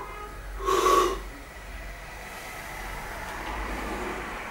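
A lifter's short, forceful breath through the nose about a second in, as he braces under a barbell held overhead for an overhead squat; then only low background noise.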